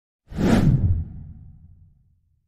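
Whoosh sound effect of an animated logo intro: a sudden rush that starts about a quarter second in, is loudest for under a second, then fades away with a low, deep tail.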